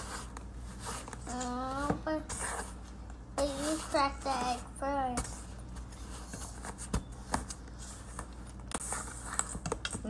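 Wire whisk clicking and scraping irregularly against a stainless steel mixing bowl as cookie dough is stirred by hand. A child's voice comes in twice, early and around the middle.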